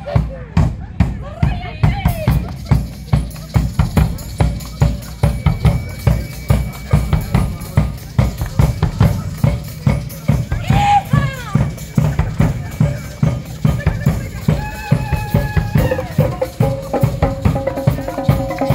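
Percussion section playing a fast, steady groove in unison on several drum kits, with a large concert bass drum and tambourine. Dense snare, tom and bass drum strokes carry on without a break, with a few held higher tones over them.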